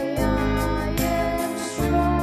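A woman singing a slow worship song into a microphone over instrumental accompaniment, holding long notes; a new chord comes in near the end.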